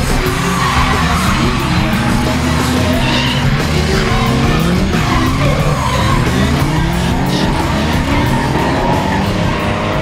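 Drift cars' engines revving up and down repeatedly, with tyres skidding and squealing, under loud music.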